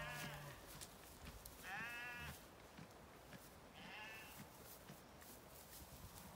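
Zwartbles sheep bleating faintly: two short bleats, about two seconds and about four seconds in, the second higher-pitched.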